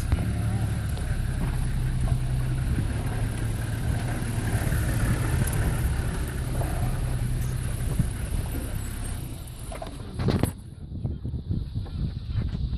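Safari 4x4 engine running steadily at low speed, with another safari vehicle passing close alongside. About ten seconds in there is a short knock, after which the engine sound drops away and it goes quieter.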